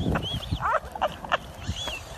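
Short high-pitched squeals and laughing cries from people, a handful of brief calls spread across the two seconds.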